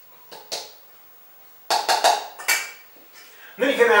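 Kitchen utensils knocking and clinking against a mixing bowl: a couple of light taps, then a cluster of several louder sharp knocks about two seconds in, as a measuring cup and spoon are worked in a bowl of dry pancake ingredients.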